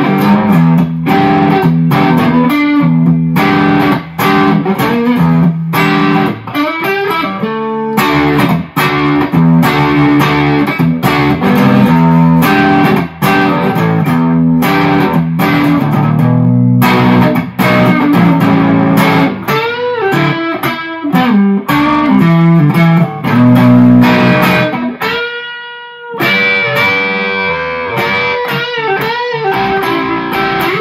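Scratch-built carved-top electric guitar with PAF-type humbuckers, played through an amplifier: fast picked runs over low notes, with string bends and vibrato in the second half and one long note held with vibrato a little before the end.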